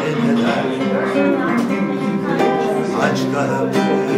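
A man singing a song in Turkish while accompanying himself on an acoustic guitar.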